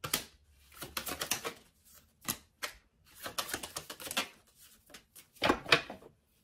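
Tarot cards being handled on a table: an irregular run of light clicks, taps and short rustles of card stock, with a louder flurry near the end.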